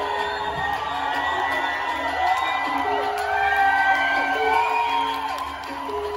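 Song intro from keyboards and electronics, with steady held synth notes, under an outdoor festival crowd cheering and whooping. The cheering is loudest about four seconds in.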